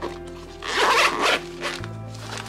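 Zipper of a Vanquest EDCM fabric pouch being pulled open in one rasp lasting under a second, followed by a short second pull, over steady background music.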